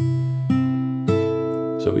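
Steel-string acoustic guitar fingerpicking a C6 chord voicing as a slow rising arpeggio: a bass note with the open high E string, then two higher notes about half a second apart, all left ringing together.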